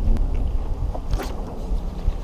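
Wind buffeting an action camera's microphone on an open boat deck: an uneven low rumble, with a sharp click at the start and a short hiss about a second in.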